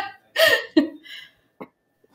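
A person laughing in two short bursts, followed by a single brief click.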